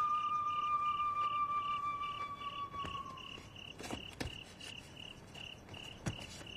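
Crickets chirping in a steady pulse, about three chirps a second, under a long held high note of music that fades out about three seconds in. A couple of faint knocks sound about four seconds in.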